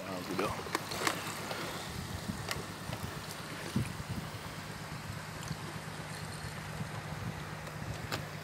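Bamboo raft being poled along a calm river: light knocks and clicks from the raft and pole over faint water sounds, with a low steady hum underneath and faint voices now and then.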